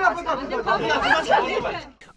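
A crowd of people talking and shouting over one another, several raised voices at once, dying away near the end.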